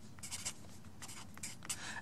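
Sharpie felt-tip marker writing on graph paper: faint, short scratching strokes of the tip, in two small groups.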